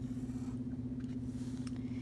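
Pencil lead scratching faintly on construction paper as it is traced around the rim of a plastic lid, with a few light clicks from handling the lid, over a steady low hum.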